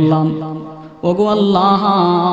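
A man's voice chanting in the melodic, sung style of a Bangla waz sermon: one long held note fades out within the first second, then a second, slightly higher held note begins about a second in.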